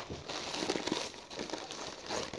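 Newspaper and brown wrapping paper crinkling and rustling as hands unwrap a small object, an irregular run of crackles.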